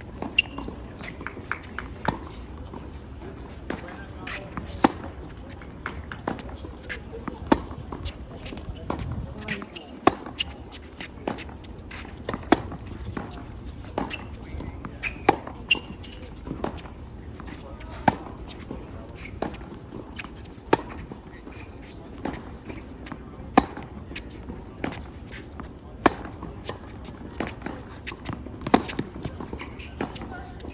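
Tennis ball struck back and forth in a baseline rally on a hard court: crisp racquet hits about every second and a quarter, alternating loud and fainter, with smaller ticks of the ball bouncing in between.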